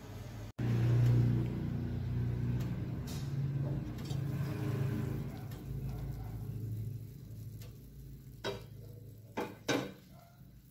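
Pot of watermelon chunks boiling: a steady low bubbling rumble that fades over the last few seconds, with a few sharp clicks near the end.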